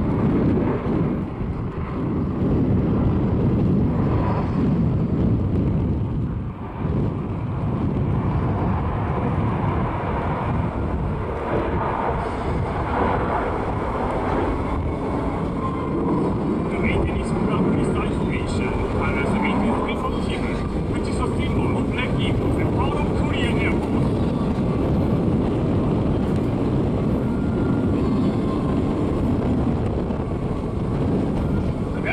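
Jet noise from a formation of eight KAI T-50 trainer jets, each on a single General Electric F404 turbofan, heard from the ground as a steady rumble.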